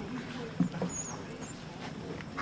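Faint, scattered voices of people gathered outdoors, with one sharp click about half a second in.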